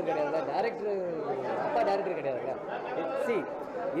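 Speech only: people talking, with chatter of other voices in the room.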